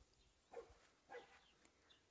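Near silence broken by two short, faint dog barks, the first about half a second in.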